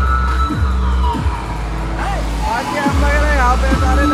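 Loud DJ music through a large DJ sound system: a heavy bass beat that cuts out briefly past the halfway mark and comes back, quick falling sweep effects, and a sung melody over it.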